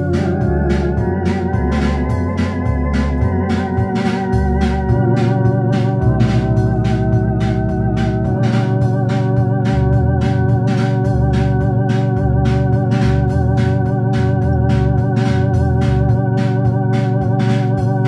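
Home electronic organ played with both hands: sustained chords on the upper manual over a moving bass line, with the organ's built-in rhythm unit keeping a steady ticking beat.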